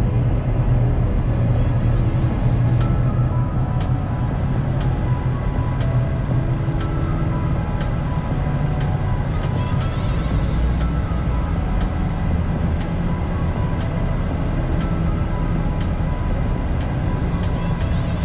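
Car driving slowly, a steady low rumble of engine and tyres, under gentle background music with held notes and a soft tick about once a second.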